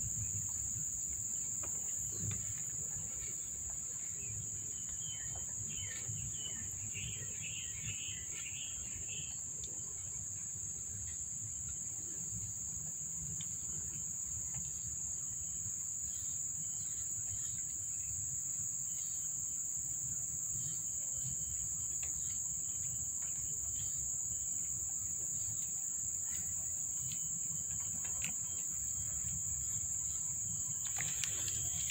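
Insects, likely crickets, droning steadily at a high pitch over a low background rumble, with a short burst of chirping about five to nine seconds in.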